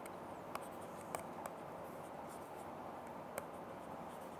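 Stylus writing on a tablet screen: faint, irregular small clicks and taps of the pen tip over a steady low hiss, as a word is handwritten.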